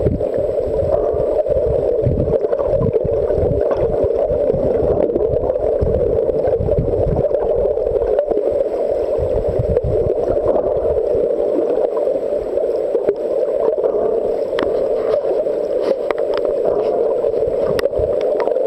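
Muffled underwater ambience picked up by a camera underwater: a steady rushing noise, with low rumbling surges through the first half and a few faint clicks near the end.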